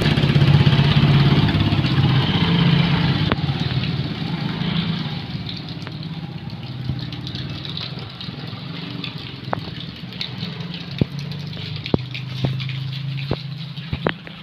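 Motorcycle engines running, loudest at first, then fading as the bikes pull away; a steady engine hum rises again near the end, with a few sharp clicks in the second half.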